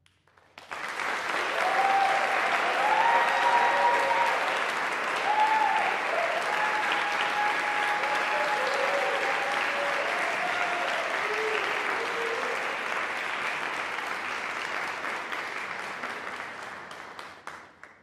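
Audience applauding, with a few cheering voices over the clapping; it starts just under a second in and dies away near the end.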